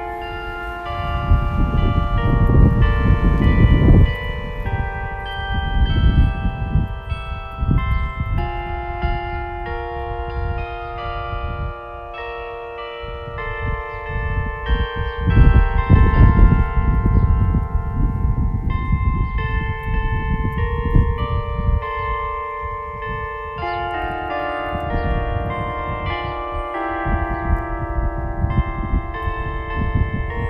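Church bells chiming a tune, many long-ringing tones overlapping. Gusts of wind rumble on the microphone beneath them, strongest early and again about halfway through.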